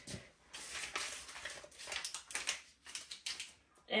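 Slipper soles scuffing and shuffling on a tile floor: a string of soft, irregular scrapes and rustles that stops just before the end.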